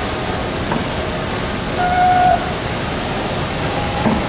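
Steady rushing background noise, with one short steady tone lasting about half a second about two seconds in.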